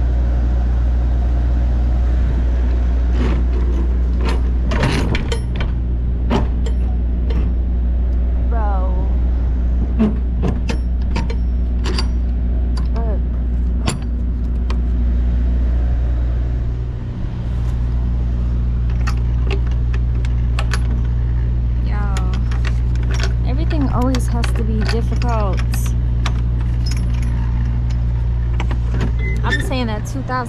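Steady low hum of an idling diesel engine, with sharp metallic clinks and rattles from a lock and the trailer's door latch hardware being handled.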